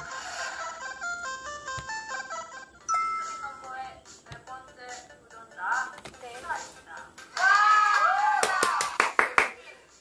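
Variety-show audio playing back: a short jingle of quick stepped electronic notes, then music, then a high voice speaking over it in the second half.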